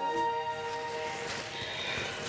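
Soft background music with steady held tones, over a young woman's tearful sobbing breaths.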